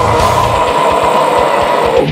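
A single harsh metal scream held for about two seconds, cutting off at the end. Fast drum beats from a heavy metal track run beneath it.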